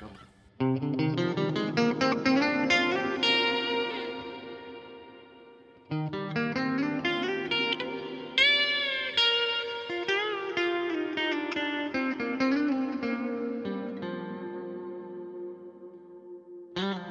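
PRS SE 24 electric guitar played through a clean amp tone from a Line 6 Helix: melodic single-note phrases with string bends and vibrato, the notes left ringing. A second phrase starts about six seconds in, and the playing rings down near the end.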